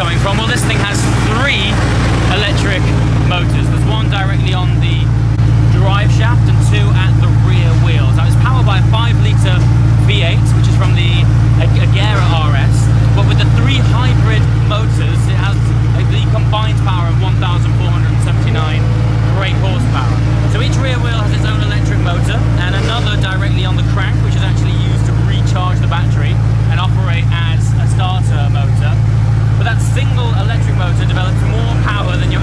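A car engine idling with a steady, unchanging low hum, under the chatter of people talking around it.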